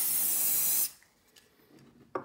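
An aerosol spray can gives one steady hiss lasting just under a second, then cuts off sharply.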